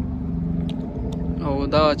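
Car engine idling steadily, a low even hum, with two faint clicks about a second in.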